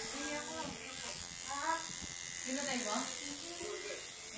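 Electric tattoo machine buzzing steadily as the needle works into the skin, with voices talking over it at times.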